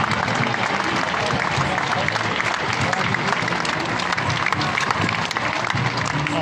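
A large crowd applauding: a steady, dense patter of many hands clapping, with voices mixed in.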